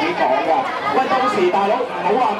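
A man speaking into a handheld microphone, his voice carried by a small portable amplifier, with other voices chattering behind him.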